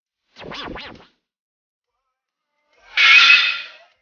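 Two short transition sound effects: a brief warbling swish about half a second in, then a louder noisy whoosh about three seconds in.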